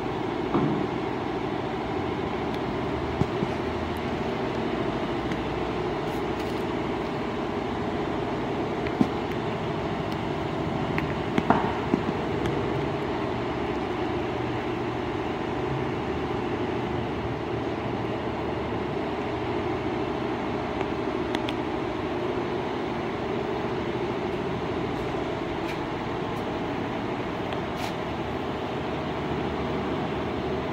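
Multi-head computerized embroidery machine running, its row of needle heads stitching on velvet with a steady, dense mechanical clatter. A few sharper clicks stand out in the first half.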